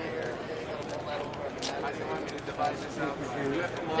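Background chatter of people talking, with a few faint crinkles from a foil card-pack wrapper being worked open by hand.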